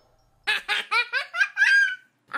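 Giggling: a quick run of about six short, high-pitched laughs starting about half a second in.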